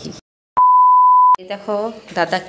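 A single loud, steady electronic bleep tone lasting under a second, edited into the soundtrack after a sudden cut to dead silence, in the manner of a censor bleep laid over a word. It starts and stops abruptly, with a woman talking just before and after.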